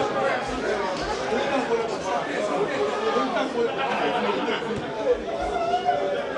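Chatter of several spectators talking at once, the words indistinct and overlapping throughout.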